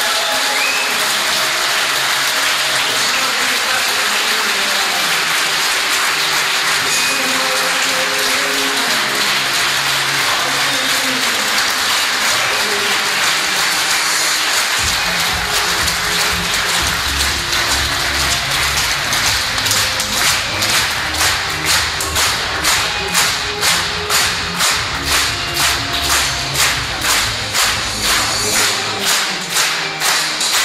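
Audience applauding over loud music. About fifteen seconds in, a bass line enters, and from about twenty seconds the clapping falls into a steady beat with the music, roughly two claps a second.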